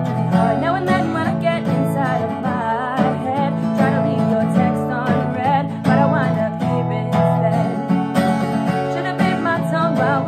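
Acoustic guitar strummed in a steady rhythm, with a woman singing along over it.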